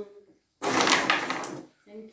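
A carrom shot: about half a second in, the striker is flicked and slides across the powdered wooden board for about a second, with clicks as it hits the pieces and the frame.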